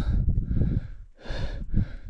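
A hiker's heavy breathing while walking, with one loud breath about halfway in, over a low rumble on the microphone.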